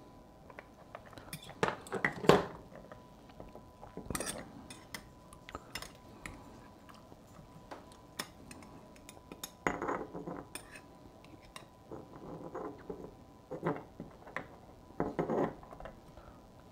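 Handling of a glass fermentation jar as its lid is popped off and a hand works inside it: scattered clinks, clicks and knocks of glass and plastic, some louder than others, at irregular intervals.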